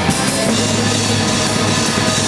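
Drum kit played live in a heavy metal band, drums and cymbals over steady held bass and guitar chords, loud and unbroken.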